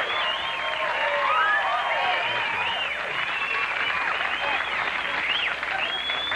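Studio audience applauding steadily, with high whoops rising and falling over the clapping.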